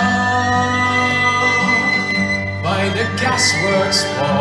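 Live Irish folk band playing an instrumental passage: a high tin whistle note held for over two seconds over accordion, fiddle, acoustic guitar and drums, with new notes coming in near the end.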